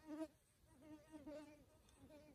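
Faint buzz of a flying insect, a hum that wavers in pitch and fades in and out several times as it moves about.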